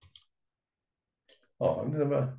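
Two short, faint computer-mouse clicks right at the start, advancing a presentation slide, followed by a man's speaking voice from about one and a half seconds in.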